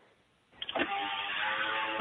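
After half a second of near silence, a steady hiss with a faint hum cuts in suddenly and runs on under the start of the answer: background noise on an open line.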